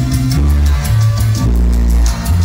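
Dance music played loud through a sonidero's PA loudspeakers during a sound check, with a heavy bass line that changes note about every half second under fast, steady percussion strokes.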